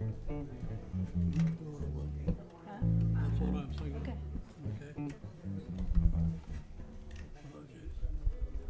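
Loose, unrhythmic plucked notes on acoustic guitar and bass, deep bass notes held and changing pitch at irregular moments: string instruments being warmed up before a song starts, with talk in the background.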